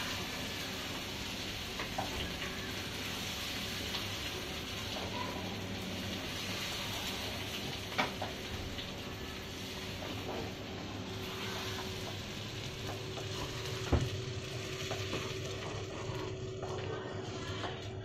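Eggs and onions sizzling steadily in a non-stick pan over a medium gas flame while being stirred with a wooden spatula, with three light knocks of the spatula against the pan.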